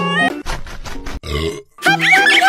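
Cartoon sound effects of the chicken being eaten: a quick run of munching clicks, then a short burp. Cheerful music stops briefly for them and comes back near the end.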